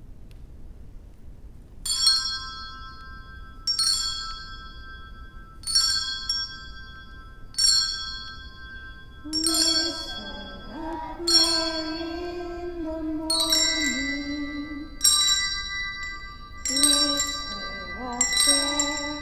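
Children's handbells rung one note at a time, a ringing strike about every two seconds, playing a slow simple tune. From about halfway, children's voices start singing along with the bells.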